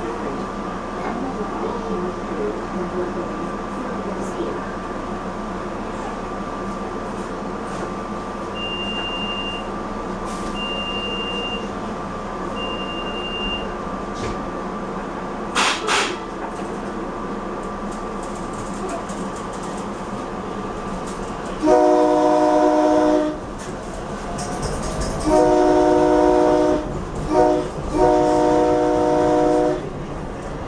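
Silverliner V electric railcar standing with a steady electrical hum, three short high beeps, then pulling away and sounding its horn in the grade-crossing pattern: two long blasts, a short one and a final long one.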